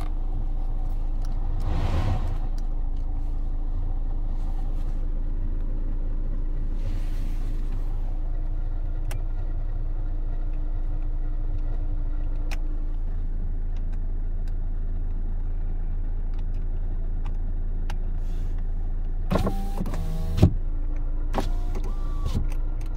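Hyundai Avante's cabin with a steady low hum from the car. Near the end the power window motor runs for about a second and the glass stops with a sharp thump, then the motor runs again briefly.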